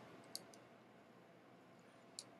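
Near silence with one faint, short click about a third of a second in.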